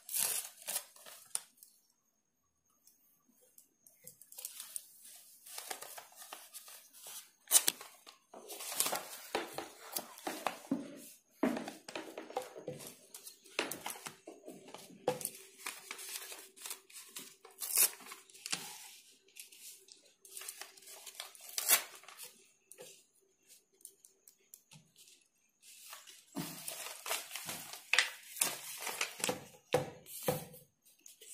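Paper being torn and handled in irregular rustling bursts with short pauses, broken by a few sharp clicks: newspaper pieces being worked onto a sheet for a collage.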